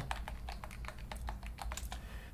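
Typing on a computer keyboard: a run of quick keystrokes entering a short terminal command and pressing Enter.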